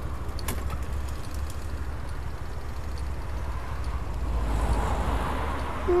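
Street traffic with a steady low rumble; a vehicle passes, swelling about four seconds in and fading again.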